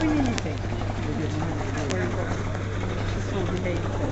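Indistinct chatter from several people in the background over a steady low hum, with a few faint clicks.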